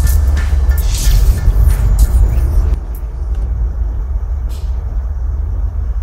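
Logo-reveal sound effect: a loud, deep rumble with a few whooshing sweeps over it in the first three seconds, after which the rumble carries on a little quieter.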